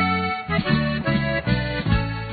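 Diatonic button accordion playing a fast norteño melody, its notes ringing in quick succession over a pulsing bass line from the band.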